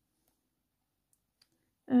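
Near silence with a couple of faint clicks, then a woman starts speaking near the end.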